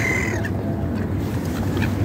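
Gulls calling over water: one loud, harsh call in the first half second, then a few fainter short calls, over a steady low rumble.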